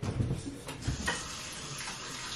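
A few light knocks and clicks from a Keurig coffee brewer being handled as a K-cup pod is loaded, followed by a faint steady hiss.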